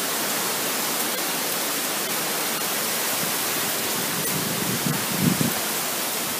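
Hurricane wind and heavy rain: a loud, steady hiss, with a brief swell about five seconds in.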